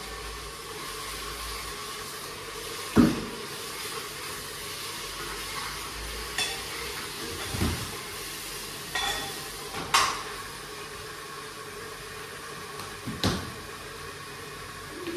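Kitchen cookware sounds: a ladle knocking and clinking against a steel pot on a gas stove, a handful of short sharp knocks spaced a few seconds apart, over a steady low hiss.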